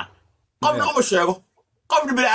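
A man's voice making repeated 'oh-oh-oh' sounds in short bursts, one lasting about a second beginning half a second in and another starting just before the end, with a wavering, clucking quality.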